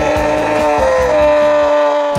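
A man's long, drawn-out scream of despair, held for the whole two seconds, its pitch sliding slowly downward, over background music with a beat.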